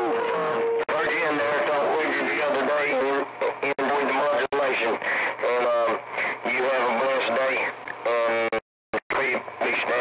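Voices of CB radio operators talking over the air, heard through a radio receiver's speaker as narrow, hard-to-make-out speech. A steady whistle tone sits under the talk in the first second, and the audio cuts out briefly near the end between transmissions.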